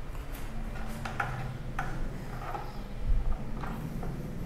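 A few light clicks and one dull low thump from hands working at a motorcycle's ignition and wiring, over a faint steady hum. The engine is not running.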